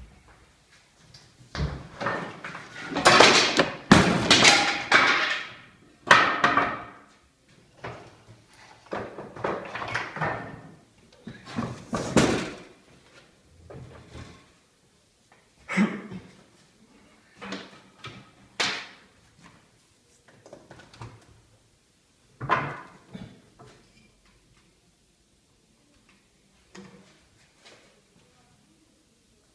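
Irregular bursts of knocking and clattering, about a dozen in all, separated by quiet gaps; the loudest come between about three and six seconds in. No steady motor hum runs underneath.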